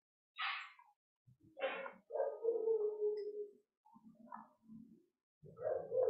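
Faint background vocal sounds: two short yelps, then a drawn-out whine lasting over a second, starting about two seconds in.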